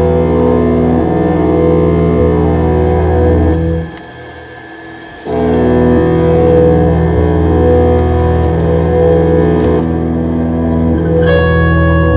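Electric guitars played through effects in a slow, droning live score: long sustained chords over a deep low hum. The sound drops away abruptly about four seconds in and swells back a second later, and higher held notes come in near the end.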